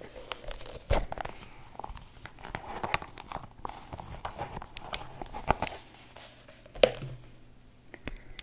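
Hands opening a black leather sunglasses pouch and sliding a pair of sunglasses out: close-up rustling and crinkling of leather with scattered clicks, the sharpest about a second in and again near the seventh second.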